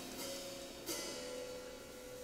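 Soft jazz instrumental passage: an archtop electric guitar sustains notes over light drum-kit cymbal strokes, with one stroke about a second in.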